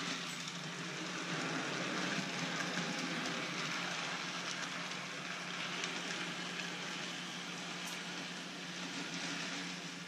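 Athearn model locomotive pulling a string of freight cars around an oval of track: a steady rolling noise of wheels on the rails over a constant low hum.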